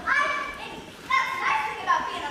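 Stage actors speaking, mostly a high-pitched voice in drawn-out phrases, the second phrase starting about a second in.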